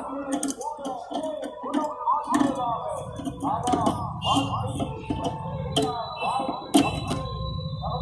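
Electric needle burner of a syringe destroyer burning off a syringe needle held in its port: irregular sharp crackles and clicks as the needle sparks. Faint voices run underneath.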